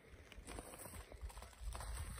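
Faint footsteps crunching on gravel, a few soft irregular steps, with a low rumble joining near the end.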